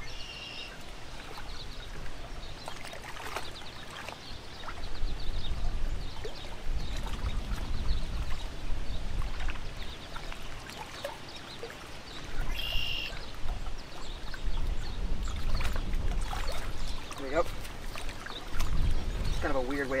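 Gusty wind buffeting the microphone in uneven swells, over small waves lapping against a rocky lakeshore.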